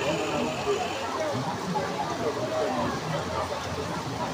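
Floodwater rushing through a flooded street as a steady noisy rush, with people's voices talking indistinctly over it.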